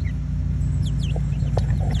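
Several short, high peeps from young chickens in the second half, over a steady low hum.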